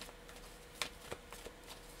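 Faint handling of tarot cards: a few soft clicks and rustles.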